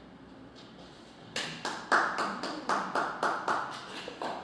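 Brief hand clapping, about a dozen sharp, evenly paced claps at roughly four a second, starting about a second and a half in.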